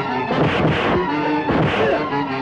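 Dramatic film background score with two punch sound effects, sharp whacks about a second apart, in a fistfight scene.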